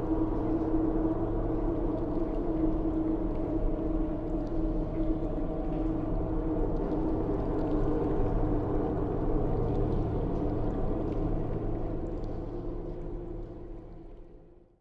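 Dark ambient drone music: a steady bed of low, held tones that fades out near the end.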